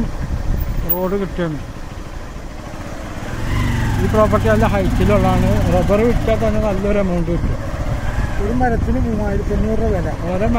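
A voice talking over the running engine of a vehicle moving along a road, with a steady low engine hum most prominent in the middle.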